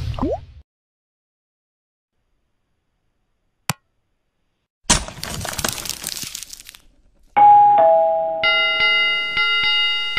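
Channel-outro sound effects. A short whoosh is followed by a click, then a hissing swoosh lasting about two seconds. Near the end comes a falling two-note ding-dong, and a bright bell chime rings on over it.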